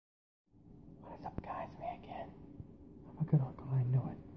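Quiet whispered speech beginning about half a second in, with a single sharp click, followed by a few short, low voiced sounds near the end.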